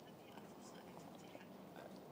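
Near silence: room tone in a pause between sentences.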